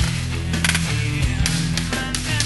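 Background rock music with a steady low bass line and sharp percussive hits.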